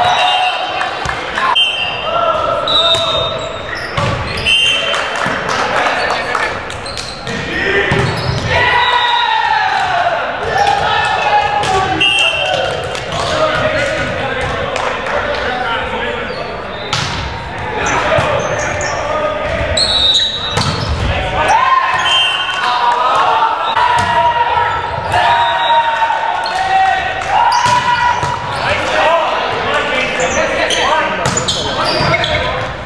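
Indoor volleyball play in an echoing gymnasium: the ball being struck and bouncing on the hardwood floor in repeated sharp hits, with players' voices calling out throughout.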